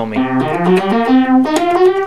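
Vintage Moog analog synthesizer played from a Moog Source keyboard: a quick run of several notes, ending on a higher note that is held.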